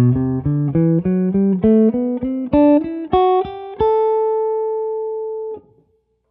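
Gibson Les Paul electric guitar playing the G major scale from its second degree, picked single notes climbing two octaves from low A to high A at about three notes a second. The top A is held and then muted off sharply near the end.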